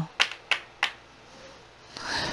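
Three short, sharp clicks, about a third of a second apart, within the first second.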